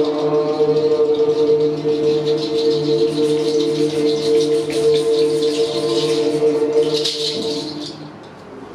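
A hand rattle shaken irregularly over a steady, held chanted drone of voices; the drone fades and stops just before the end.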